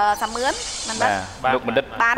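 A woman talking in Khmer. About a quarter second in, her talk gives way to a steady, high hiss that lasts most of a second before the talk picks up again.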